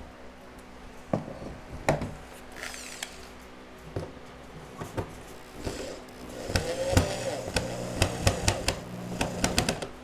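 Scattered knocks and clicks of parts being handled and set in place, then a power drill driving a door-hinge screw for about three seconds near the end, with a run of clicks over the motor.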